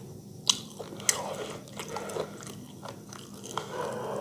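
Close-miked chewing of food, with two sharp clicks about half a second and a second in and smaller wet mouth clicks after.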